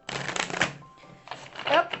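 Tarot deck being shuffled by hand: a quick burst of rapid card riffling in about the first second, then softer handling of the cards.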